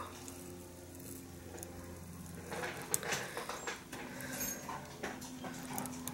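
Faint scratching and dabbing of a felt-tip permanent marker on the fibres of a dubbed fly tail, starting about halfway through, over a low steady hum.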